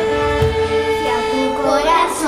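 Live string ensemble of violins holding one long note over acoustic guitar and a regular low drum beat. A voice begins singing near the end.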